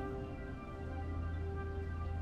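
Background music score with slow, sustained held notes over a low bass drone that swells about a second in.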